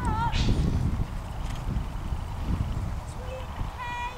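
Wind rumbling on the microphone, with the soft hoofbeats of a pony trotting on a sand arena. Short warbling chirps sound at the start and again near the end.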